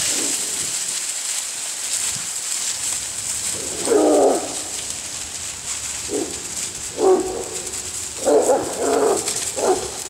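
Hound puppies barking and baying in a string of short calls starting about four seconds in, over a steady crackling rustle of dry leaves as they run through them.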